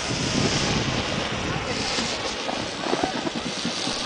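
Wind rumbling and buffeting on the microphone in falling snow, with a steady hiss and faint voices in the background.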